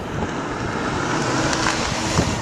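Aston Martin DB9 driving along a road: a steady rush of tyre and engine noise.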